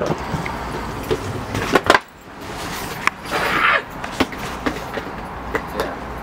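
Knocks and clicks of a door and footsteps, with handheld camera rustle, as people come in from the street; the outdoor background drops away sharply about two seconds in.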